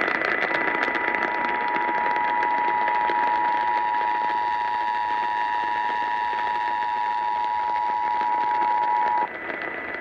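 Emergency Alert System two-tone attention signal (853 and 960 Hz) heard through an AM radio over static hiss and a faint steady whistle. It starts about half a second in and cuts off suddenly about a second before the end. It marks the opening of a Required Monthly Test, following the SAME data header.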